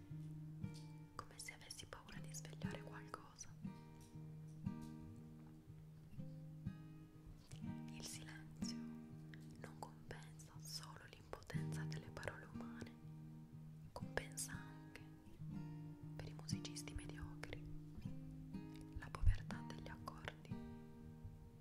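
Slow plucked acoustic guitar music, one held note after another, with a voice whispering over it.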